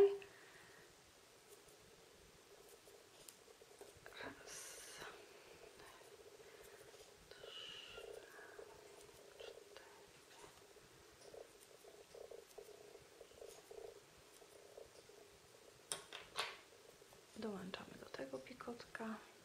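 Faint handling noises of tatting: thread drawn through the fingers and a tatting shuttle handled, with a short rustle about four seconds in and a couple of sharp clicks near the end.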